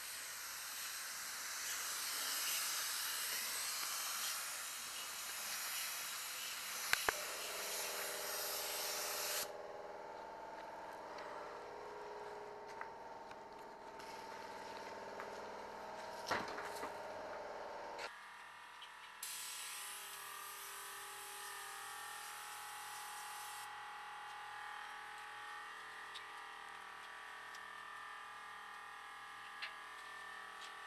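Air-fed gravity-cup paint spray gun hissing steadily as it lays on high-build primer, stopping about nine seconds in. A steady hum with several tones follows, and the spray hiss returns for about four seconds past the middle, with a few sharp clicks along the way.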